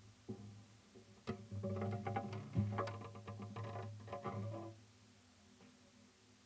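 Classical guitar music: a few single plucked notes, then a quicker run of ringing notes over a low sustained bass, fading out about five seconds in.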